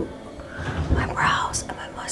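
A woman whispering a few words.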